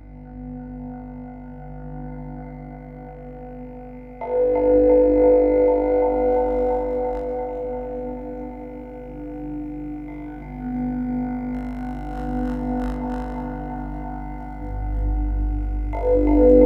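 Ambient drone music: low sustained tones with held higher notes layered above them. It swells up suddenly about four seconds in and builds again near the end.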